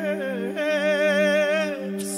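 Male singer holding long, wordless notes into a microphone with wide, even vibrato, the pitch dipping briefly about half a second in before he holds again and lets the note fade near the end, over a steady low drone.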